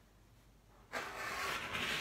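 Rotary cutter blade rolling through the quilt's fabric and batting layers against a cutting mat, trimming the edge along a ruler. The cut is one continuous rasp of about a second and a half, starting about a second in.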